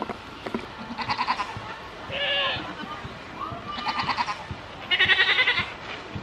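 Goats bleating: four calls in quick succession, most of them quavering, with the last one the loudest.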